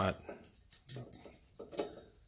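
A few light metallic clicks from a snap ring being fitted onto the snout of a VW stroker crankshaft, the sharpest one near the end.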